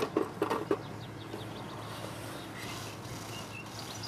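Steady low outdoor background with a few faint, short, high bird chirps about three seconds in.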